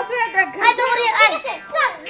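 Speech only: high-pitched voices talking fast, a child's among them.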